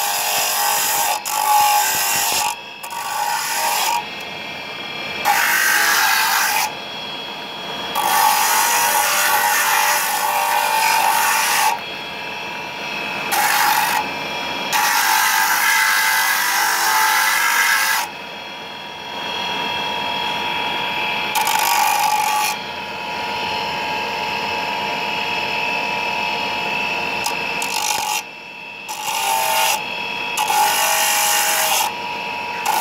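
Electric motor spinning a grinding disc against pink rock salt, running steadily with a whine. The grinding grows louder for stretches of a few seconds at a time as the salt is pressed to the disc to shape it, and eases between them.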